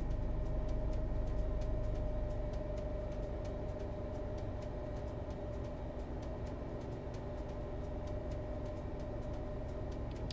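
Steady low background hum with a faint steady tone over it and faint, evenly spaced ticks.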